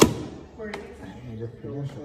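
A hand-cranked souvenir penny-pressing machine gives one sharp clunk as its grinding crank noise stops, followed by two faint clicks. People talk in the background.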